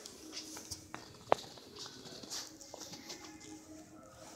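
Footsteps on a hard store floor with scattered light clicks and taps, and one sharp click about a third of the way in, over faint room noise.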